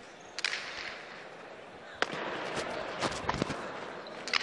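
Jai alai pelota cracking against the fronton walls during a rally: several sharp, echoing hits, a loud one about half a second in and the loudest about two seconds in, then quicker smaller hits.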